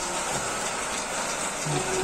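Metal-spinning lathe running with a steady hiss as a hand-held bar tool presses against a stainless steel milk pan blank turning on the mandrel.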